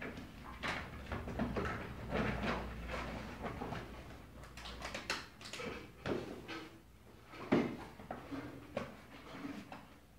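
Rustling, scraping and knocking of books being handled and a body shifting on a wooden floor, irregular throughout, with one sharp thump about seven and a half seconds in.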